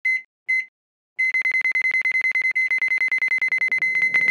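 Electronic countdown-timer beep sound effect: two short high-pitched beeps, a pause of about half a second, then rapid beeping at about ten a second.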